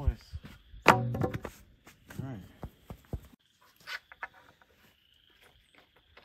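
Rough-cut wooden boards knocking as they are handled and set down, with one sharp thunk about a second in and scattered lighter knocks and clicks after it.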